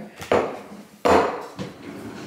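Two solid knocks on a kitchen counter about three-quarters of a second apart, the second the louder, as things are set down on it.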